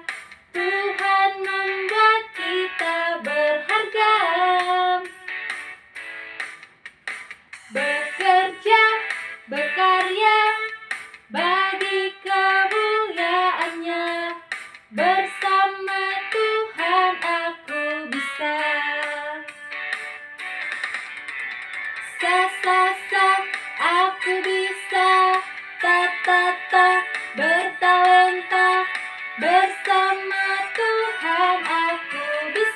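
A woman singing a lively children's praise song in phrases with short breaks between them.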